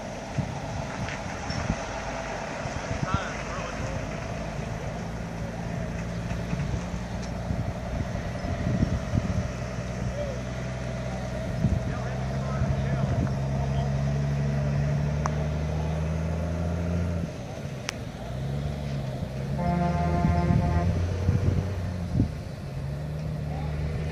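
A heavy truck's engine running as it pulls a houseboat on a trailer out onto the road, its pitch rising about halfway through and dropping a few seconds later. About twenty seconds in, a vehicle horn sounds briefly.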